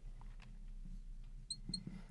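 Marker pen writing on a glass board: faint scratching with two short high squeaks of the tip near the end.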